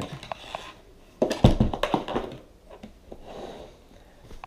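Handling noise: the plastic body of a Makita backpack vacuum and its harness straps knocking as the unit is set down on a table, with a dull thump about a second and a half in, then light rustling.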